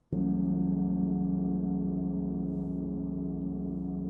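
A large hanging gong struck once with a soft mallet, coming in suddenly and then ringing on as a sustained hum of many overlapping tones with almost no fading.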